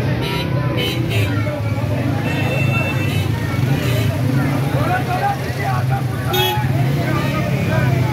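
A crowded street: many people's voices over a steady low hum of motorbike engines running.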